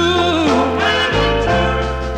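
1961 R&B ballad record: a held, wavering sung note fades out under a second in over the band's sustained chords, which change about a second in.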